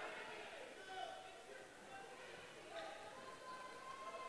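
Faint, distant voices of players, coaches and spectators calling out in a gymnasium during play, with one voice holding a long call near the end.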